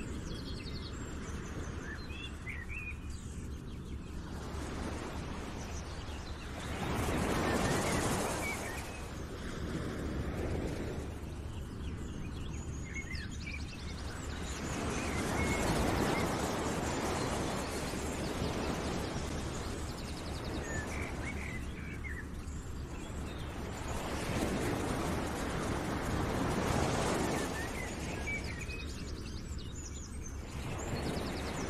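Outdoor nature ambience: a rushing noise that swells and fades every several seconds, with scattered bird chirps.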